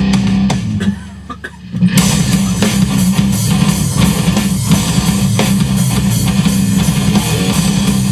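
Rock music with guitar and drum kit, cutting to a brief quieter break about a second in, then the full band comes back in and plays on.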